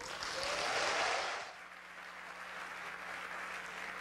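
Audience applauding in a concert hall, loudest for the first second and a half, then dying away to scattered faint clapping.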